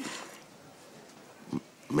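A pause between lines of dialogue: faint room tone, broken by one short, low vocal sound from a person about one and a half seconds in.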